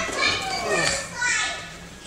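Children's high-pitched voices in play, calling out without clear words and dying away about a second and a half in.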